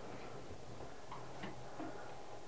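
Quiet room tone with a few faint, soft ticks.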